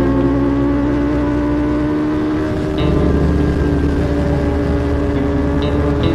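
Sport motorcycle running at high speed, its engine and wind noise steady and loud, mixed with a sustained ambient music track.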